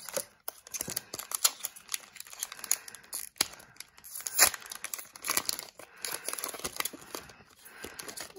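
Foil trading-card pack wrapper being torn open and crinkled by hand: an irregular run of sharp crackles and rustles.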